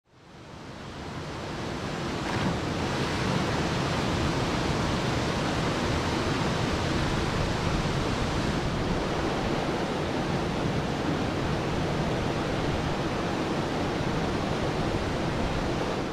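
Small waterfalls and cascades pouring over a rock ledge into a pool: a steady rush of falling water that fades in over the first couple of seconds and then holds even.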